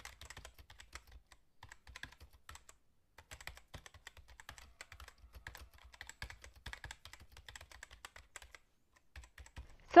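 Typing on a computer keyboard: a quick, quiet run of key clicks, broken by short pauses about three seconds in and near the end.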